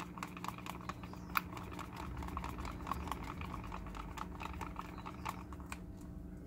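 Wooden craft stick stirring acrylic paint and Floetrol in a plastic cup: a fast, irregular run of faint clicks and scrapes as the stick knocks and drags against the cup, with one sharper tap about a second and a half in.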